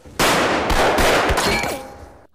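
Handgun fired several times in rapid succession in a film soundtrack: a dense, loud volley lasting about a second and a half.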